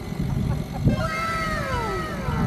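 A single long, high, voice-like call that starts about a second in and glides slowly downward in pitch, like a drawn-out exclamation.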